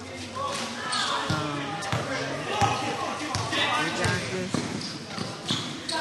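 Voices of players and onlookers calling out during a basketball game, broken by several sharp thuds of the ball bouncing.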